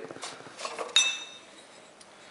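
Glass beer bottles clinking together as one is pulled out of a bag of empties, with light handling noise first. One sharp clink about a second in rings with a high tone and fades quickly.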